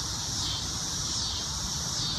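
Outdoor background: a steady high hiss over a low rumble, with no distinct sound event.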